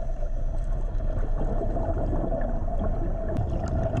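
Underwater ambience: a steady low rumble with a faint constant hum and a few scattered small clicks.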